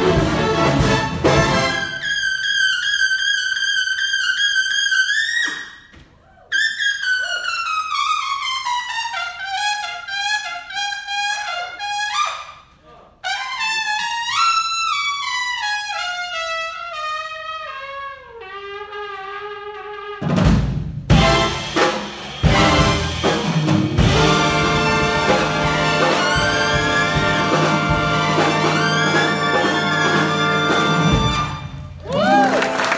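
Jazz big band playing, then an unaccompanied trumpet solo: phrases that step down in pitch, a quick rising run in the middle and a low held note to finish. About two-thirds of the way through, the full band of trumpets, trombones and saxophones comes back in.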